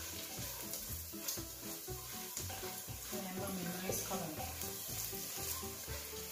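Peanuts and aromatics sizzling steadily in hot butter in a stainless steel pot, stirred with a spoon.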